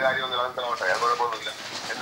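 Recorded telephone call: a voice speaking over a phone line, thin and narrow in sound, with a faint steady high whine behind it.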